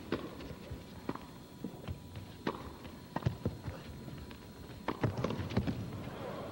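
Tennis rally in a doubles match: sharp pops of racket strikes and ball bounces at uneven spacing, coming faster near the end as the players exchange volleys at the net.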